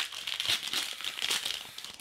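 Foil wrapper of a Pokémon booster pack crinkling as it is torn open and pulled apart by hand, dying away near the end.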